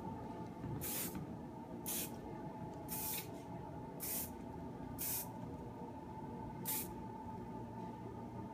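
Kérastase Laque Noire aerosol hairspray sprayed in six short puffs of hiss, about one a second, to set and hold a finished updo.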